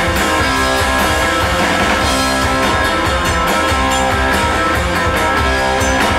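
Rock band playing live in an instrumental passage: guitar over bass, with steady drum and cymbal hits.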